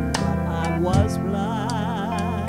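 Live band playing a slow soul-blues song, with keyboard, guitar, bass and drums on a slow beat. About a second in, a long held note with wide vibrato rises over the band.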